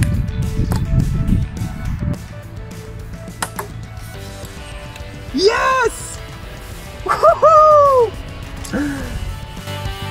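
Background music runs throughout. Over it a man gives a loud cheering shout about five seconds in and a longer, louder one about seven seconds in, each rising and then falling in pitch, with a short shout near the end.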